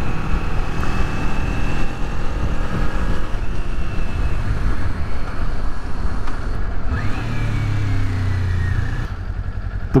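Kawasaki Z400's parallel-twin engine running under way, mixed with wind and road noise, with a thin high-pitched whine over it. Late on, the whine falls in pitch and the engine note drops as the bike slows.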